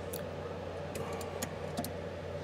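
A few faint, scattered light metallic clicks from a tubing cutter being worked around a copper pipe, over a low steady hum.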